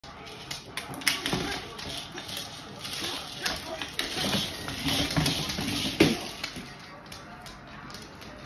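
CERISUNO treat-dispensing ball being pushed and rolled across a hardwood floor by a dog, with kibble rattling and clicking inside the shell. A few sharp knocks stand out, the loudest about a second in and about six seconds in.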